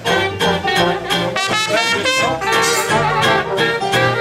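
A traditional New Orleans–style jazz band playing together: cornet, trombone and clarinet weaving lines over a plucked upright string bass and guitar keeping a steady beat.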